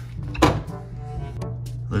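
Background music starts, and about half a second in there is a single thunk as a small red fridge's freezer door is pulled open.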